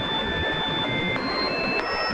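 Electronic music intro: a dense, hiss-like noise wash with thin, high held synthesizer tones that step up in pitch twice, about a second in and again near the end.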